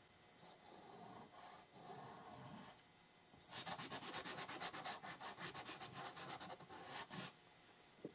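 Soft pastel stick scribbling on sand-grain pastel paper: a few light scrapes, then from about three and a half seconds in a run of rapid back-and-forth strokes that stops shortly before the end.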